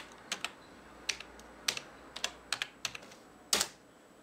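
Typing on a desktop computer keyboard: irregular key clicks at an uneven pace, with a louder, longer clatter of keys near the end.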